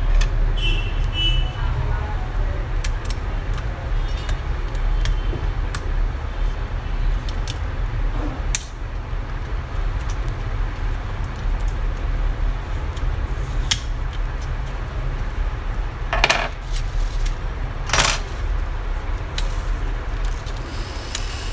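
Small clicks and taps of a pry tool and plastic and metal parts being handled inside an HP Pavilion 15 laptop during disassembly, over a steady low hum. Two louder scrapes come near the end as the case is lifted.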